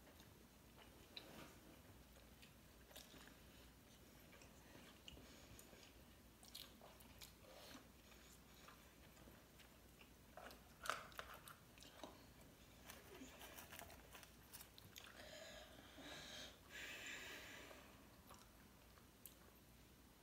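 Faint chewing of sushi, with scattered soft mouth clicks and a sharper click about eleven seconds in.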